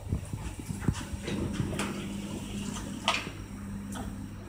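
Hitachi rope elevator's car doors opening at the rooftop floor: a steady low hum of the door operator with several knocks and clicks, the sharpest about three seconds in.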